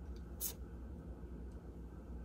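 Quiet room with a low steady hum, and one brief paper rustle about half a second in as a stack of heat-transfer sheets is handled.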